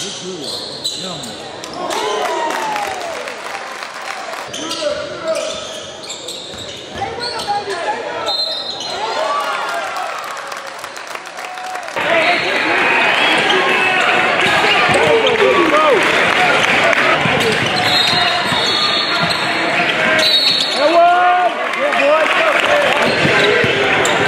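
Live gym sound of a basketball game: a ball dribbled on a hardwood floor amid spectators' voices and short squeaky glides from the court. The crowd noise gets noticeably louder about halfway through.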